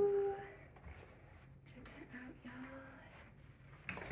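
A woman's drawn-out "ooh" trailing off at the start, then a quiet room with faint rustling of fabric being handled and a brief soft hum about two seconds in.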